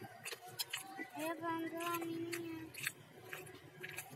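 Brown paper food wrapper crinkling with short sharp clicks as rice and side dishes are picked up by hand. About a second in, a drawn-out pitched sound, a hum or a cat's mew, glides and then holds steady for about a second and a half.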